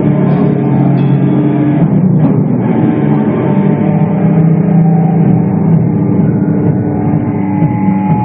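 Loud live sludge metal band: heavily distorted guitars and bass hold low, sustained chords that change every second or two over the drum kit.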